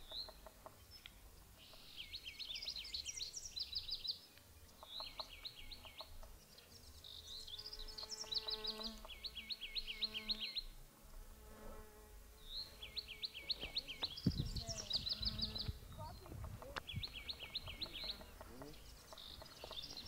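Songbird singing outdoors: bouts of quick, high, repeated notes a second or two long, given over and over, with fainter lower calls in between.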